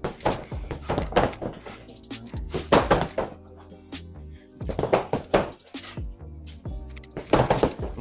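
Boxing-gloved punches thudding into an Everlast freestanding heavy bag in short bursts of three-punch combinations, a handful of quick strikes every second or two, over background music.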